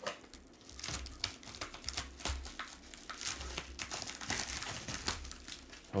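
Plastic bubble mailer crinkling and rustling as it is handled, a dense run of irregular crackles.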